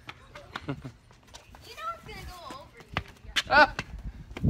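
Voices calling out over a game of catch, with sharp knocks as a small football bounces on the concrete driveway, the loudest about three seconds in, before it is caught.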